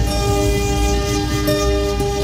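Background score music: held synthesizer chords over a deep bass drone, with the chord shifting about one and a half seconds in.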